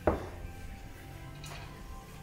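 A single sharp knock from the snooker cue ball just after the start, dying away quickly, then only faint background music.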